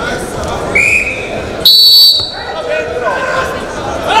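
A referee's whistle blown in one short, sharp blast about halfway through, the loudest sound here, with a shorter, lower tone just before it. Shouting voices echo in an arena hall around it.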